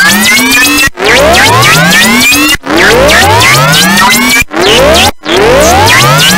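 Korg synthesizer playing loud, harsh electronic noise music: a run of rising pitch sweeps, most just under two seconds long, each breaking off and starting again from low, with a shorter sweep near the end.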